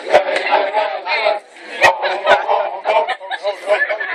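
Group of men shouting and chanting together over crowd chatter, broken by a few sharp percussive hits, the loudest about two seconds in.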